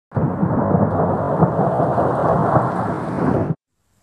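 A loud, dense, even noise, heaviest in the low and middle range, that starts suddenly and cuts off abruptly after about three and a half seconds.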